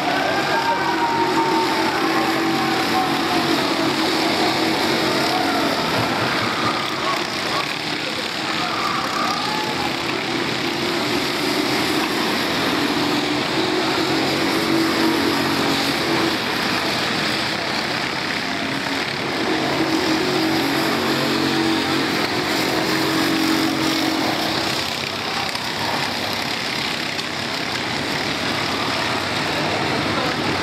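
Racing kart engines heard from trackside, their steady buzzing notes swelling and fading as karts pass in turn, with the pitch sweeping up and down in the first few seconds. Indistinct voices run underneath.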